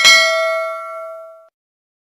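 Bell-icon 'ding' sound effect of a subscribe-and-notify animation: a single bright chime struck once and ringing out, fading away about a second and a half in.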